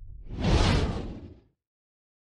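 A low rumble dies away, then a whoosh sound effect swells about half a second in and cuts off into silence about a second and a half in.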